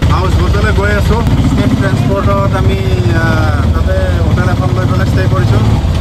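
Auto-rickshaw engine running steadily with a low rumble, heard from inside the open cab, with a man's voice talking over it.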